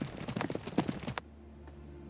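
Horse's hooves beating quickly on a dirt path. They cut off suddenly a little over a second in, leaving faint low steady tones.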